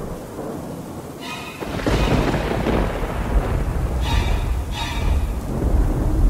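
Thunderstorm sound effect: steady rain, with a rumble of thunder building about two seconds in. Short pitched notes recur every second or two over the storm.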